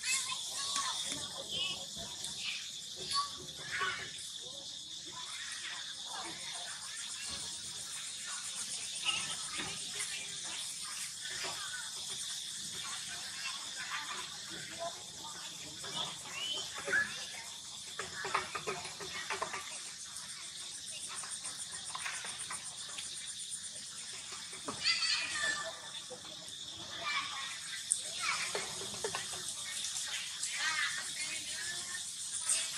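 A steady, high-pitched insect chorus, with short scattered squeaks and calls rising above it every few seconds; the clearest come about 25 seconds in.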